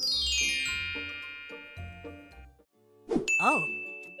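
A cartoon chime effect: a quick descending run of ringing bell tones that fades over about two seconds, over light background music. Near the end comes a short sliding, wobbling cartoon sound and a high held tone.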